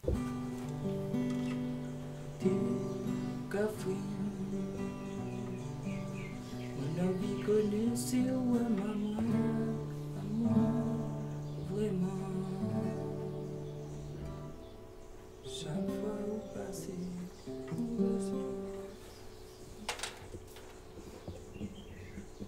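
Nylon-string acoustic guitar playing slow chords and melody notes, fuller in the first half and thinning to sparse, quieter notes in the second half.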